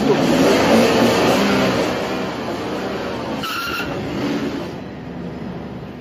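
A white van pulling away through a crowd, with engine and tyre noise mixed with crowd commotion. It is loudest at first and fades as the van leaves. A brief high tone sounds about three and a half seconds in.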